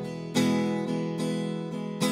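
Acoustic guitar being strummed with no singing: a chord struck hard about a third of a second in and left ringing under lighter strokes, then struck again near the end.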